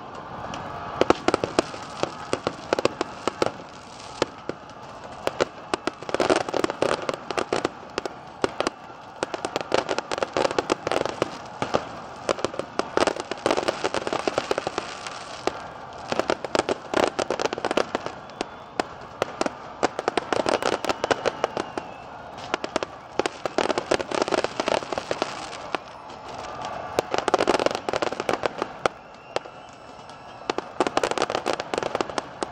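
Aerial fireworks bursting in a dense, irregular run of bangs and crackles, many each second, with several louder clusters.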